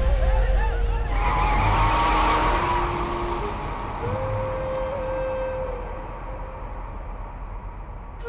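Film sound effect of a loud noisy burst with a screech-like, skid-like sound that fades over several seconds, under soft sustained music tones.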